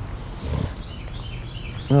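A songbird chirping, a quick run of short high notes in the second half, over outdoor street background. A brief soft low sound comes about half a second in.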